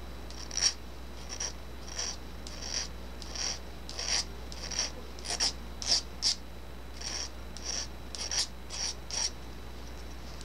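Small hand file rasping across the end of a piston ring for a Kohler K241 Magnum 10 engine, in short strokes of about two a second, some seventeen in all, stopping just after nine seconds. The ring end is being filed to open up the ring end gap.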